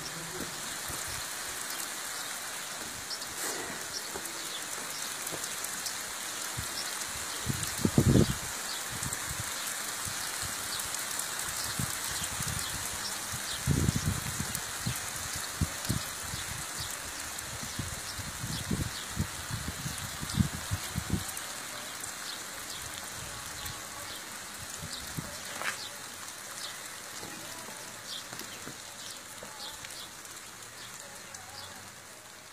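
Steady rain falling on the ground and pavement, an even hiss with scattered drip ticks. A few low thumps stand out: one about eight seconds in, which is the loudest, another near the middle, and a cluster a little after that.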